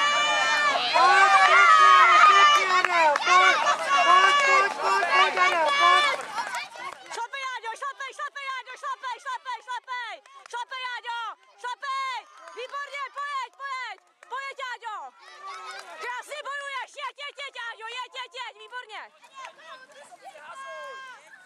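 Spectators' voices shouting and calling out. They are loud and close for the first six seconds, then fainter after a change about six and a half seconds in.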